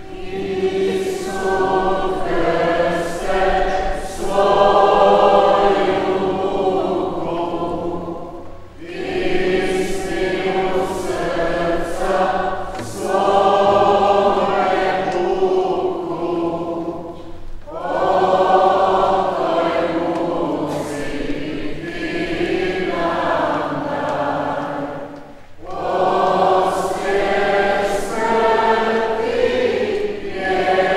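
Church choir singing a hymn, in long phrases with brief breaks between them.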